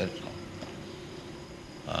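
A pause in a man's lecture: a steady recording hiss with a faint hum, between a short word at the start and another just at the end.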